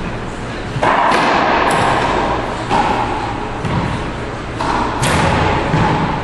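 Racquetball shots in an enclosed court: three sharp smacks about two seconds apart, each ringing on in the court's echo, with duller thuds of the ball bouncing on the wooden floor between them.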